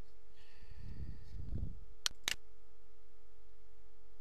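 Two sharp computer-mouse clicks about a quarter second apart, a couple of seconds in, over a steady faint electrical hum. A brief low rumble comes just before the clicks.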